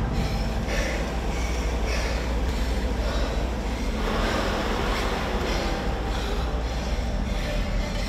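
Wattbike indoor bike's air-braked flywheel whirring under hard pedalling, a steady rushing drone that pulses with each pedal stroke and grows louder about halfway through.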